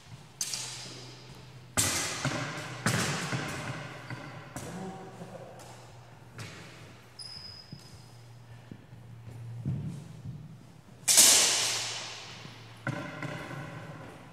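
Steel longsword (feder) blades clashing about ten times in a sparring bout, each strike ringing out and echoing in a large hall; the loudest clash comes about 11 seconds in.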